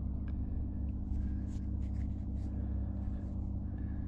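Steady low rumble of wind buffeting the camera microphone, with a few faint light clicks.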